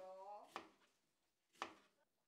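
Kitchen knife cutting an onion on a cutting board: two faint knocks of the blade on the board, about a second apart.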